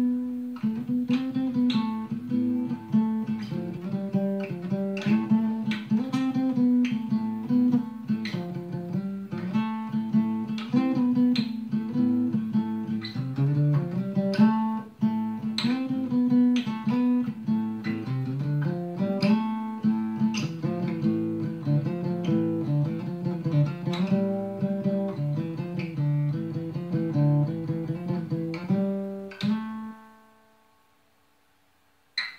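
Steel-string acoustic guitar played solo, a steady run of picked notes and chords over a moving bass line, stopping at the end on a chord that rings away.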